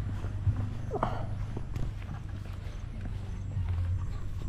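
Footsteps on a brick-paved path, a few faint knocks over a steady low rumble.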